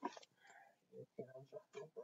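Faint, quiet speech from a man, a few short low murmured words with near silence between them.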